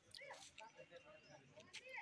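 Near silence, with faint distant voices calling out briefly twice.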